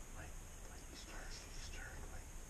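Faint hushed whispering voices over a steady background hiss.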